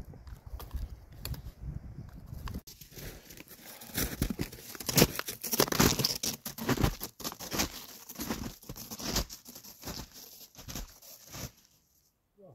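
Snowshoes crunching on snow with each step as a hiker walks. The steps are loudest about four to seven seconds in, then fade as he moves away.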